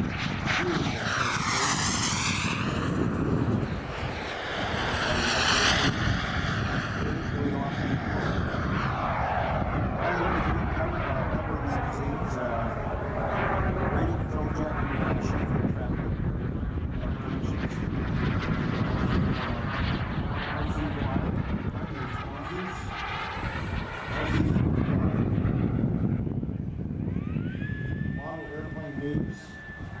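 Turbine engine of a radio-controlled Jet Legend F-16 model jet in flight, its sound swelling and sweeping in pitch as it makes several passes. Near the end a high tone rises and then holds steady.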